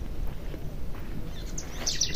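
Outdoor background with a low rumbling noise, and a bird starting a quick series of short, high chirps near the end.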